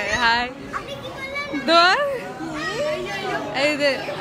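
Several people's voices talking and calling out over background chatter in a crowded room.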